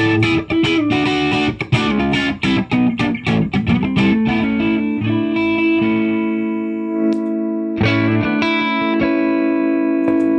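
Music Man Valentine electric guitar played through a T-Rex Karma boost pedal that is switched on, heard through room microphones. A run of quick picked notes comes first; then a chord is struck about five seconds in and left ringing, and another is struck near the end.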